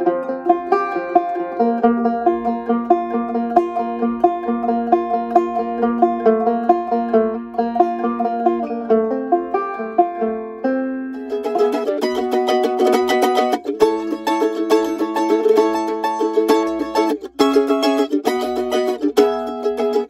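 Six-string banjo (ganjo) played with a pick: a fast, cross-picked bluegrass line of rapid single notes. It turns brighter and busier about halfway through, with a couple of short breaks near the end.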